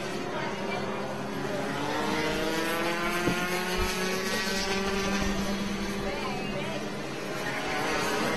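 Several Rotax 125cc two-stroke kart engines running at racing speed, their pitch rising and falling as the karts accelerate and pass by.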